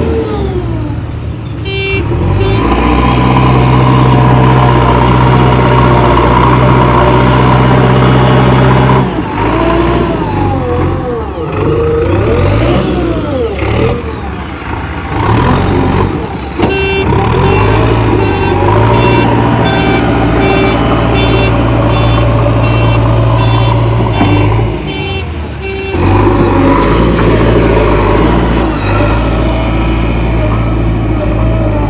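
A JCB 3DX Xtra backhoe loader's diesel engine running loud under load as the machine works and drives on loose soil, its pitch rising and falling with the throttle in the middle and then holding steady. For several seconds in the middle, a short high beep repeats a little faster than once a second.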